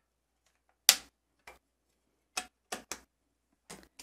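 Round magnets clicking against a metal stamping platform as they are lifted and set back down: one sharp click about a second in, then a few lighter clicks in the second half.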